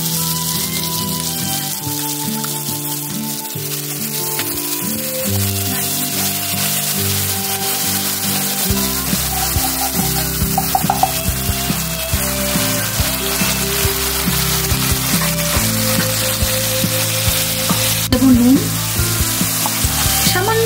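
Poppy-seed and mustard paste frying in hot mustard oil in a non-stick kadai, sizzling steadily. From about the middle on, a spatula stirs it with scattered clicks and scrapes against the pan. Background music with sustained notes plays throughout.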